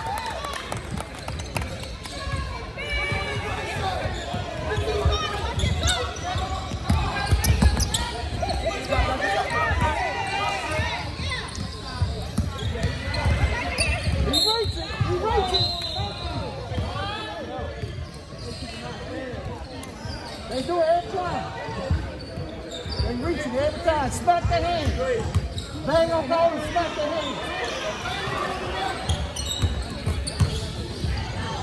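Basketball dribbled and bouncing on a hardwood gym floor during play, over near-continuous shouting and chatter from players and spectators in a large echoing hall.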